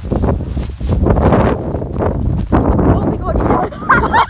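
Wind buffeting a phone's microphone during a run through a snowy blizzard, heavy and uneven, with loud wordless vocal noise from the runners over it.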